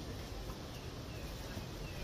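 Quiet outdoor ambience: a low steady rumble with a few faint bird chirps and one faint click about half a second in.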